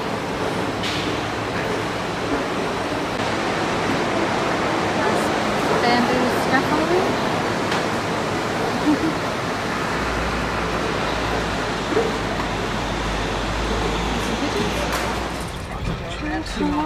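Steady city street noise with people's voices in the background. A low rumble joins about ten seconds in.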